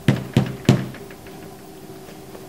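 Three quick knocks of a fist on a wooden door, evenly spaced about a third of a second apart, in the first second.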